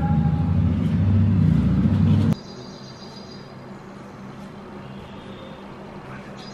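A loud low rumble that cuts off suddenly a little over two seconds in, leaving a quieter steady hum.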